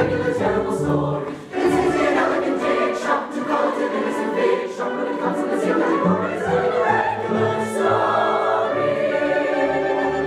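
Large mixed chorus singing slow, sustained chords, with a short break between phrases about a second and a half in.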